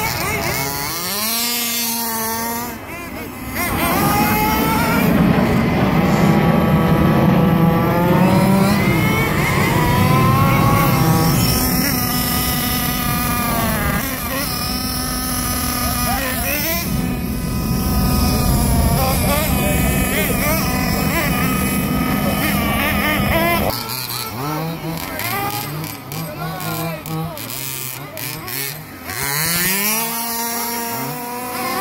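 Radio-controlled car's motor revving up and down again and again as the car is driven, quieter in the last few seconds.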